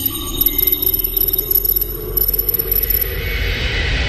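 Glitchy electronic sound effects for a digital-code animation: a steady low drone under very high, stuttering beeps, with a hiss that builds towards the end.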